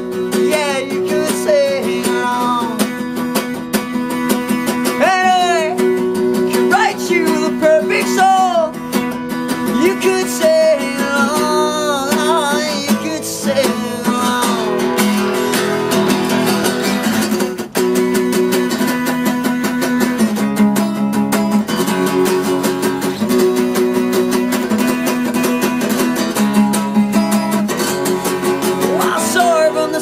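Acoustic guitar strummed steadily in a pop-punk chord pattern, an instrumental stretch between sung verses of the song.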